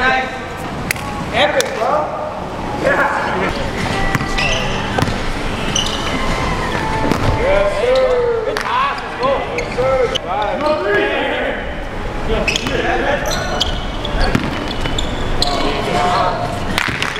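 A basketball bouncing on a hard court, with players shouting and calling out to each other during play.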